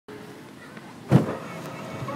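A roller coaster train jolts once with a heavy clunk about a second in, over low steady running noise.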